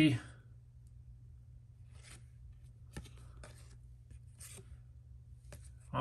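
Trading cards sliding against one another as they are flipped through by hand: faint, short papery scrapes about once a second over a low steady hum.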